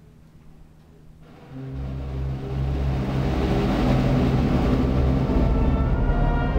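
A wind band begins to play about a second in. Low held brass chords swell quickly in a crescendo and then sustain.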